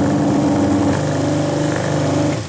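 Electric grain mill with sifter running while it grinds and sifts hemp seed cake into flour: a steady mechanical hum made of several steady tones, which shifts slightly about halfway through.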